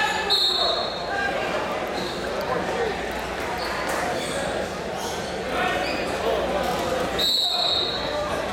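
Gym crowd at a wrestling match: spectators and coaches shouting and talking over one another in an echoing hall, with occasional thuds. A shrill steady tone sounds for about a second near the start and again near the end.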